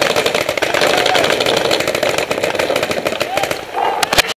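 Paintball markers firing rapidly, a dense, continuous rattle of shots.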